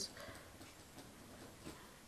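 Faint pen strokes of a marker writing on paper, with a few light ticks.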